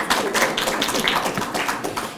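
Scattered clapping from a lecture-theatre audience: a quick, uneven run of many sharp claps.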